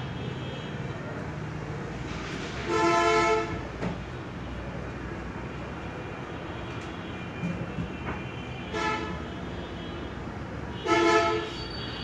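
Short pitched horn blasts sounding three times, loudest about three seconds in and again near the end with a fainter one between, over a steady background rumble.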